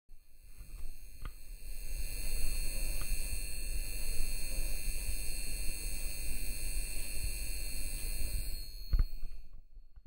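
Intro sound effect of a glowing light bulb: a steady electrical buzz with several high whining tones over a crackly low hum. A sharp click comes about a second in and another near the end, and the buzz then drops away.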